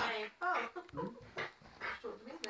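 A small dog giving short, high cries that slide up and down in pitch, mixed with a person laughing.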